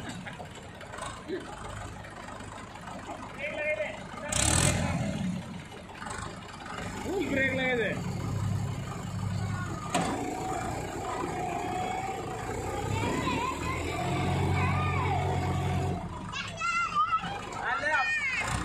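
Diesel engines of a Mahindra 585 XP Plus and a John Deere 5050E tractor running hard while pulling against each other in a tug of war, the drone swelling louder twice. Voices call out over it, and there is a brief burst of noise about four seconds in.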